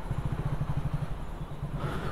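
Motorcycle engine running at low revs, a steady rapid low putter, as the bike rolls slowly before stopping to park.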